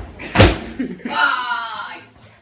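A single sharp thump about half a second in, followed by a short wordless sound from a person's voice.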